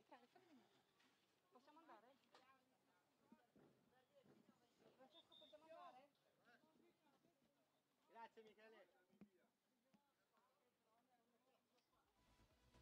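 Near silence, with faint distant voices talking.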